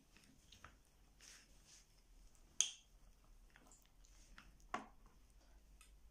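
A metal spoon digging into a glass ramekin of baked apple crumble: faint scraping with two sharp clinks against the glass, the louder about two and a half seconds in and another near five seconds in.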